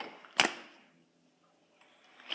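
A single sharp snap of a playing card being flicked with the fingers, about half a second in.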